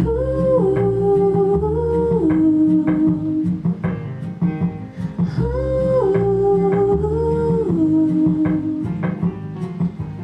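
A woman sings a wordless "ooh" melody in two phrases of long held, stepping notes over a backing of plucked acoustic guitar and bass.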